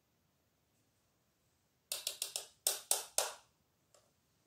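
A quick run of about seven sharp taps, starting about two seconds in and lasting a second and a half.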